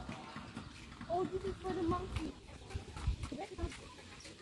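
A voice says a short "oh", with more speech-like sounds for about a second after it. Two low knocks follow about three seconds in.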